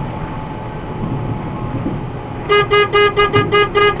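Steady road and engine noise inside a box truck's cab at highway speed. About two and a half seconds in comes a quick run of eight short beeps, all at one steady pitch, about five a second and louder than the road noise.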